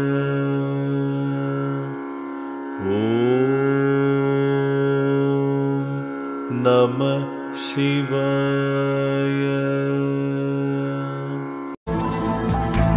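A voice chanting a Hindu mantra in long, sustained tones, sliding up into a new held note about three seconds in, with brief pauses between phrases. It cuts off abruptly just before the end, when different music takes over.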